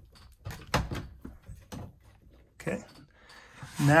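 A handful of sharp clicks and knocks in the first two seconds, then one more short knock, as the pop-top roof's latch and clip are worked by hand.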